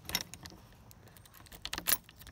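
A ring of keys jingling and clicking against a metal padlock and hasp as a key is fitted into the lock, with a few light clicks near the start and a louder cluster of clicks near the end.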